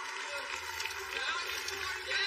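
Indistinct voices of spectators shouting and cheering, over a steady low background hum.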